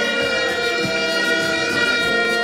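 A steady horn blast held at several pitches at once, like a multi-tone air horn sounded in a rally crowd.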